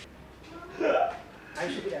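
Speech only: two short bits of a man's voice, one about a second in and a word near the end, with quiet room tone between.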